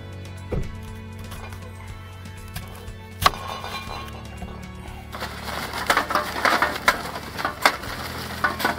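Background music throughout, with a single sharp knock about three seconds in. From about five seconds in, charcoal briquettes clatter and rattle continuously as they are poured into the steel charcoal column of a homemade vertical rotisserie.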